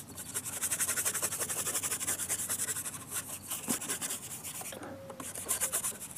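Paintbrush scrubbing acrylic paint back and forth on a painting board: a fast, even run of rasping strokes, several a second, that grows weaker after about three seconds.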